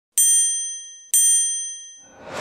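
Two bright bell-like dings about a second apart, each ringing and fading away: the chime sound effects of an animated TV-channel logo intro.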